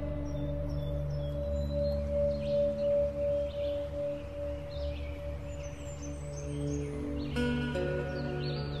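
Meditative ambient music: a long ringing bell-like tone that throbs slowly over a low drone. A fresh bell-like strike comes about seven seconds in, and faint high chirps sound in the background.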